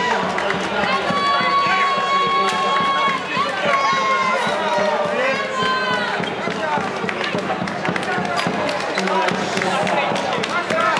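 A crowd of spectators talking and calling out, with a few long held notes in the first half.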